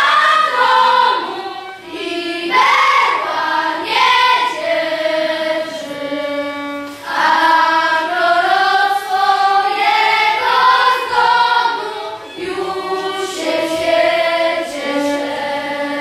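A children's choir singing a slow melody together, with notes held for a second or two.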